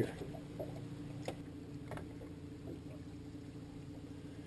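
A boat's motor humming steadily and low, with two faint knocks about a second apart in the middle.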